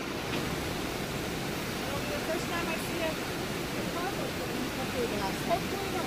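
A swollen river in flood rushing steadily: a constant wash of fast-moving water.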